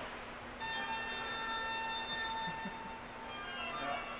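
A sustained ringing tone made of several pitches at once, like a chime or bell, that starts about half a second in and dies away after about three seconds.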